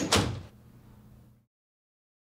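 A door being shut: a sharp latch click, then a loud thud that dies away over about half a second. A low room hum follows and cuts off suddenly at about one and a half seconds in.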